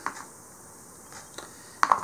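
Low steady background hiss with a few faint clicks. A sharp click comes near the end, just before speech resumes.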